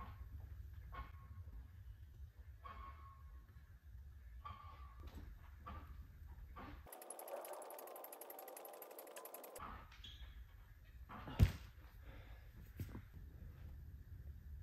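Low, steady room hum with a few faint knocks, and one sharp thump about eleven seconds in that stands out as the loudest sound, followed by a smaller knock a second later.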